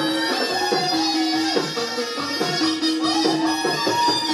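Chầu văn ritual music: a live traditional ensemble with a steady low percussion beat, about two to three strokes a second, under held notes and a bending melody line.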